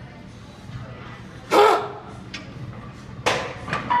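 A short, loud shout about a second and a half in, then two sharp bursts of sound near the end as the lifter grips a loaded barbell for a sumo deadlift.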